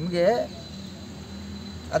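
A man's voice says one short word, then pauses. Through the pause a faint, steady, high-pitched tone runs on over low outdoor background hum.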